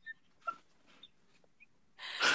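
Near-silent laughter: a few faint, short high squeaks and breaths spaced out over about two seconds.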